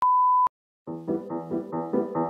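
A single steady electronic beep lasting about half a second, cut off with a click, then a brief silence before background music of separate keyboard-like notes starts.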